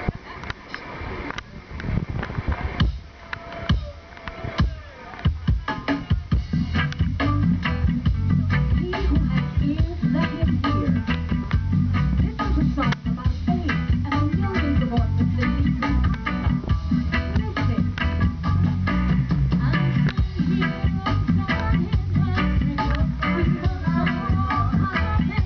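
Live reggae band starting a song: a sparse opening of separate hits, then the full band comes in about six seconds in with a heavy, steady bass line, drums and electric guitars.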